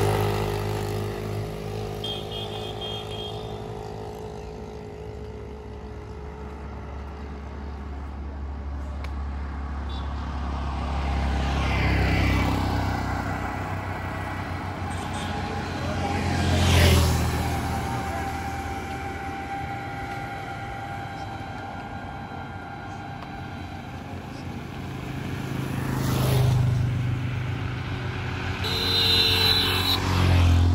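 Road traffic passing one vehicle at a time, each swelling and fading over a low rumble. A motorcycle pulls away at the start, several more vehicles pass through the middle (the sharpest just past halfway), and a CNG auto-rickshaw passes close at the end.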